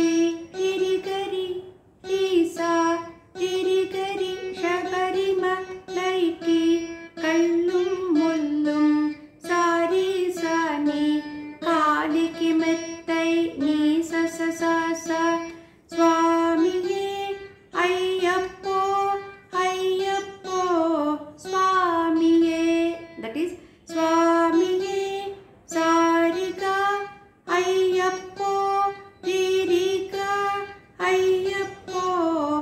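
Saraswati veena playing a Carnatic melody: a steady run of plucked notes, each struck sharply and fading, many bent and slid in pitch (gamakas). A woman's voice sings the melody softly along with it.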